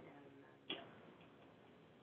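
Near silence: room tone, broken once by a single short click about two-thirds of a second in.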